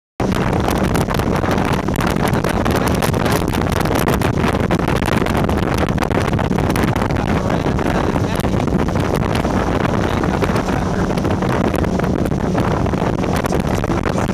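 Motorboat under way, its engine a steady hum beneath heavy wind buffeting on the microphone and rushing water from the wake, as it tows inflatable tubes.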